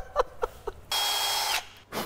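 A short hiss from an aerosol spray can, lasting under a second, with a thin whistling tone running through it; it cuts off abruptly.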